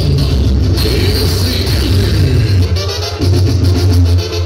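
Loud Latin music with a heavy, steady bass line.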